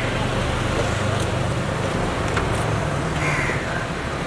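Street noise with a steady low hum of traffic and idling engines, and a crow cawing briefly about three seconds in.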